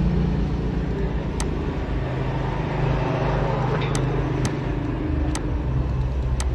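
Steady low background rumble with a hum, and a few sharp computer-mouse clicks as text is selected and reformatted.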